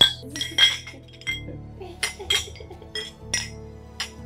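Stemmed champagne and wine glasses clinking together in a toast: a series of bright, ringing clinks, the loudest at the very start and about half a second in, with more following, over soft background music.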